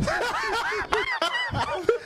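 Several men laughing together in short, repeated chuckles.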